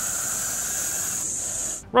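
Russell's viper hissing: one long, steady hiss that stops abruptly just before the end.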